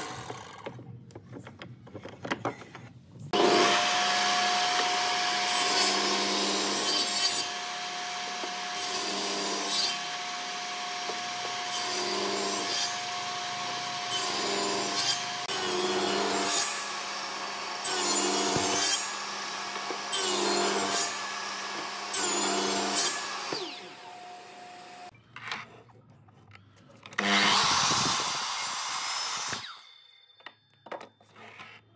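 Table saw running with a steady hum, its blade cutting a wooden block in a regular run of short passes, each pass a louder surge of sawing. Near the end there is a brief, louder burst of cutting.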